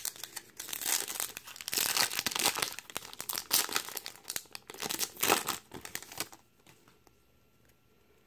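Foil wrapper of a Topps baseball card pack being torn open and crinkled by hand: a dense crackle of foil that stops about six seconds in.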